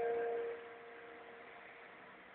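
A single bell-like chime is struck at the start, rings for about half a second and fades away over the next second.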